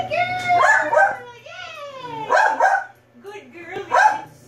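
A dog whining and yipping in a run of high cries that slide down in pitch, one drawn out. It is a dog protesting while it waits for its turn.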